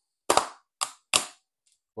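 Scored perspex (acrylic) sheet snapping along its knife-scored line, giving three sharp cracks within about a second as the break runs through.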